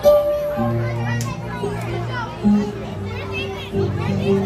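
Music with long held low notes, under the chatter of a crowd and children's voices.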